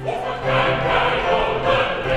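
Music with a choir singing, sustained and full throughout.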